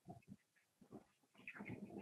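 Near silence, with faint, indistinct sounds in the second half.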